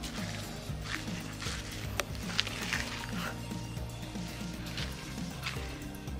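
Background music: sustained low tones under a quick, repeating pattern of short notes, with a few faint ticks.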